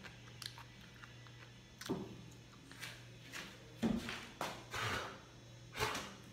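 A person chewing a mouthful of ratatouille in which the potato is undercooked and still raw. A few short, separate mouth sounds come at about two, four and five seconds, the loudest near the end.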